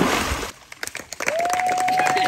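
Water splashing as a person is immersed for baptism. It is followed by a small outdoor crowd clapping, with one long, steady, high cheer held for about a second and a half near the end.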